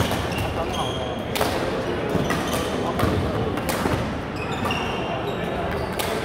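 Badminton rackets striking a shuttlecock in sharp cracks, about four hits during the rally, with sneakers squeaking on the court floor. Voices chatter in the background of the hall throughout.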